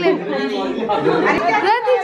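Speech only: a group of people chatting together in a room.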